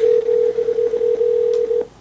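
Cisco desk IP phone's speaker playing a steady telephone tone for about two seconds and then stopping: the ringback tone of an outgoing call ringing at the other end.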